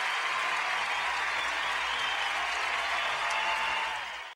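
Arena crowd applauding for a figure skater: a steady, even wash of clapping.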